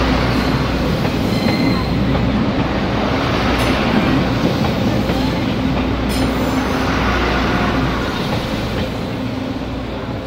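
Taiwan Railway DRC-series diesel railcar train passing a few metres away at low speed, with a steady rumble of engine and wheels on the rails. The sound fades over the last two seconds as the end of the train goes by.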